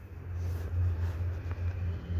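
A low, steady background rumble with no clear pitch, growing louder about a second in.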